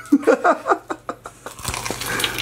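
A man laughing in short bursts, then a crunchy bite into fried chicken near the end.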